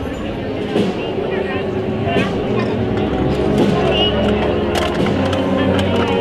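A wind band holds sustained chords under the chatter of a crowd, with a few sharp clicks, the clearest about one and five seconds in.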